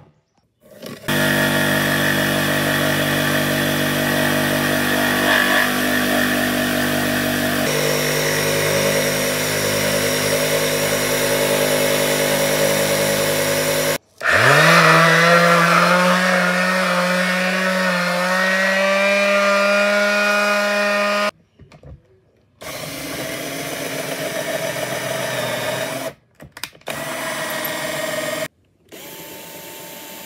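Electric power tools working wood in several separate runs: a steady motor for about thirteen seconds, then a palm sheet sander starting up with a rising whine and running on a pine block. Near the end come a few shorter, quieter runs of a power tool with gaps between them.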